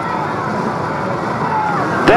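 A pack of BriSCA F1 stock cars' V8 engines running together as the field comes round to the rolling start, their notes wavering up and down.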